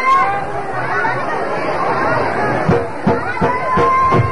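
A crowd of many voices talking and calling out over one another. Near the end a drum starts beating and a long, steadily held note begins.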